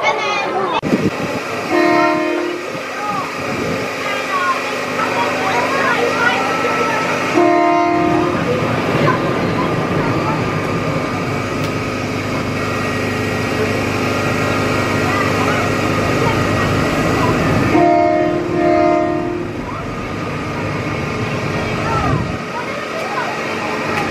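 Small family roller coaster train running along its track with a steady rumble. Short horn-like tone blasts sound three times, the last a quick double blast near the end.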